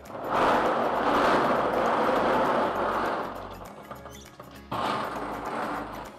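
Dozens of plastic lotto balls rattling and tumbling together in a clear plastic draw drum as they are mixed. It comes in two spells: a long one of about three seconds, then a shorter one about five seconds in.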